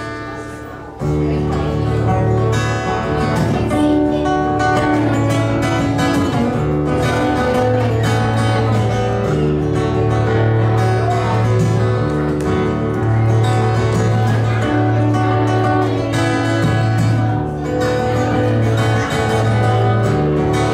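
Acoustic guitar played solo, starting about a second in and running on as a steady run of chords, with the low notes changing every second or two.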